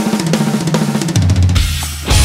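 Pop-punk song recording: a drum-kit break of rapid snare, bass drum and cymbal hits after the vocal stops. Bass guitar joins about halfway through.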